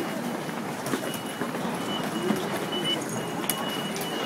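Crowd bustle at station ticket gates: passengers' footsteps and movement with other people's voices in the background. A steady, thin high electronic tone runs through the middle, and there is a sharp click near the end.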